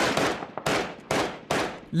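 Rifle gunfire: four separate shots at uneven intervals of roughly half a second, each with a trailing echo.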